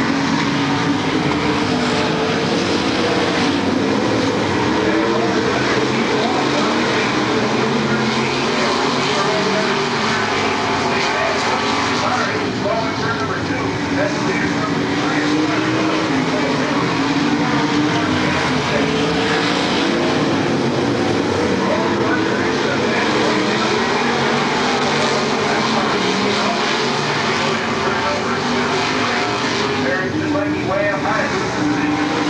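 A pack of dirt-track race cars running laps together, their engines blending into a loud, steady drone that swells and fades as the cars pass, heard from the grandstand.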